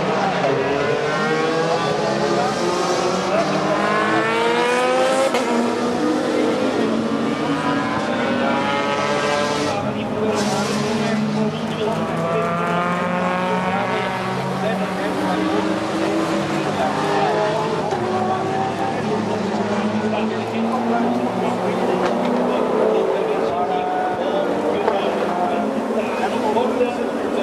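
Race car engines as cars pass one after another at speed, their engine notes rising and falling as each one goes by.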